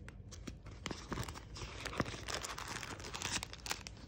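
Foot-pad packaging crinkling and crackling as it is handled and pulled at by hand in an attempt to tear it open, with many irregular sharp clicks.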